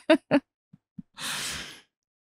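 The last short bursts of a person's laughter, then about a second in a single breathy sigh lasting about half a second.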